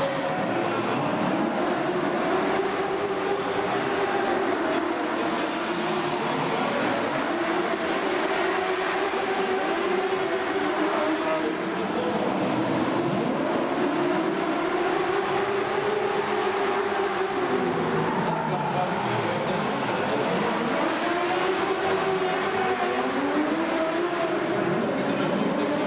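Several racing sidecar outfits' engines running hard around a dirt oval, their pitch repeatedly rising and falling as they accelerate out of the turns and back off into them, with several engines overlapping throughout.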